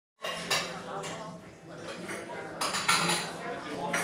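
Café ambience: crockery and cutlery clinking and clattering, with indistinct voices in the background. Sharper clinks stand out about half a second in and near three seconds in.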